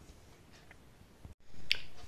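Faint light scratches and ticks, then an abrupt jump in background noise and a single sharp click like a finger snap.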